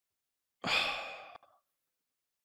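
A man's single sigh into a close microphone: one breathy exhale of under a second that fades out.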